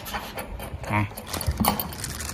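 A few light knocks and clicks from handling aluminium solar mounting rails and their hardware on a corrugated metal roof, with a short murmured 'mm' about a second in.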